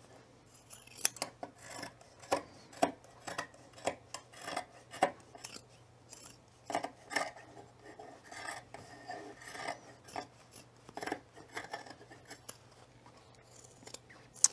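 Fabric scissors snipping through several layers of gathered cloth, trimming a raw edge: a run of short, irregular snips with brief pauses between cuts.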